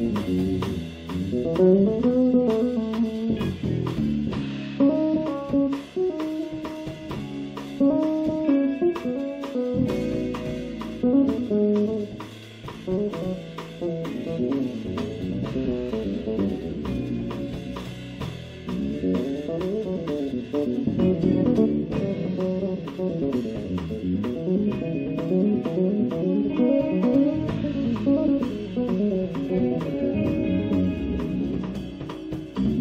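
Live jazz-fusion band of electric guitar, two electric basses and drum kit playing, with busy, fast-moving melodic lines over steady drumming.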